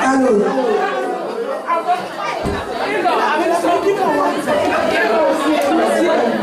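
Many people talking at once in a large room: a steady hubbub of overlapping voices, with a brief low thud about two and a half seconds in.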